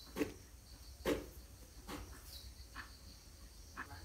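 Faint clicks and scrapes, about one a second, as a phone logic board is handled and brushed clean. They sit over a steady high hiss.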